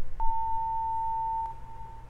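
A single steady electronic beep tone starts a moment in, holds for about a second and a quarter, then drops in level and fades away, over a low steady hum. It is an old-TV switch-off sound effect as the picture shrinks to a dot.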